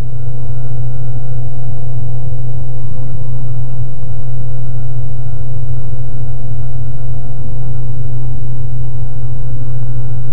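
Washing machine drum spinning, with a loud, steady motor hum that holds one even pitch throughout.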